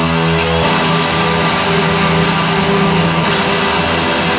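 Rock music led by electric guitar: held notes ringing together, shifting to new notes about half a second in.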